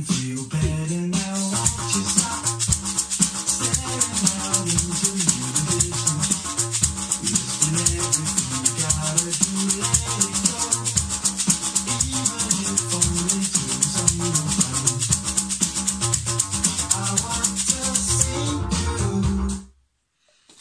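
Homemade shaker, dried lentils in a small plastic Tupperware tub, shaken in a fast steady rhythm over backing music with pitched notes. Shaker and music stop together about half a second before the end.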